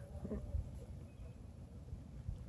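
Quiet outdoor background: a faint, steady low rumble with no shot or distinct event.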